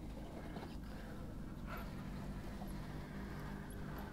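RC rock crawler's sensored brushless electric motor and gear drive running at slow crawl speed, a steady low hum with a couple of faint clicks from the tires and chassis on rock.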